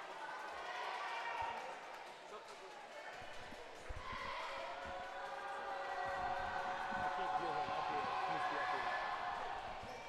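A basketball bouncing several times on a hardwood gym floor as a player dribbles at the free-throw line, under the voices of the crowd and cheerleaders in the gym.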